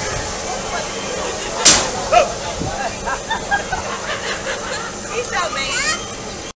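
People's voices chattering over a steady hiss, with one short, sharp blast of air about a second and a half in and a smaller one just after, typical of the compressed-air system on a pneumatic launch tower.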